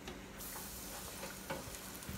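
Crappie fillet, dipped in mustard and fish-fry coating, frying in hot oil in an electric deep fryer: a steady sizzling hiss that grows brighter about half a second in, with a couple of faint clicks.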